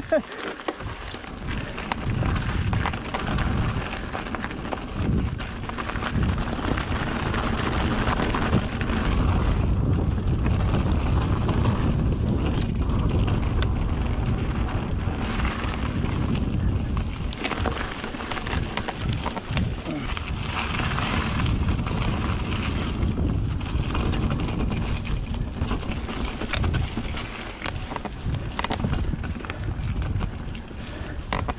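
Mountain bike riding fast down a dirt forest singletrack, heard from a camera on the bike or rider: steady wind rush over the microphone with tyre roar and the rattle and knocks of the bike over roots and bumps. A short high-pitched squeal sounds about four seconds in, with briefer ones near twelve and twenty-five seconds.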